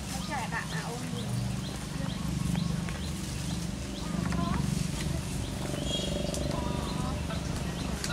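Outdoor ambience: an unintelligible murmur of voices runs underneath, while short high chirping calls repeat about twice a second, with a few sliding calls near the start and about six seconds in.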